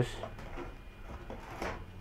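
Faint clicks and scrapes of tile pieces being picked up and handled, over a low steady hum.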